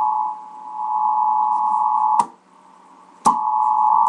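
Capehart AN/WRR-3A Navy tube receiving set giving out a steady whistle near 1 kHz, which fades briefly about half a second in. About two seconds in a sharp click cuts the tone off, and about a second later a second click brings it straight back.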